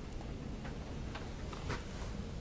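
A few faint ticks and taps, about half a second apart, over quiet room noise: a lecturer stepping up to a whiteboard and setting a marker to it.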